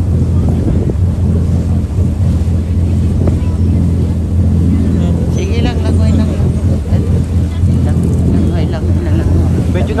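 A boat's engine running with a steady low drone, under wind noise buffeting the microphone.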